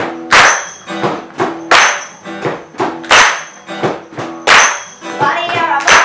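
A small live band playing: acoustic guitar chords under a steady beat of sharp percussion hits, the strongest about one every second and a half with lighter ones between. A boy's voice starts singing near the end.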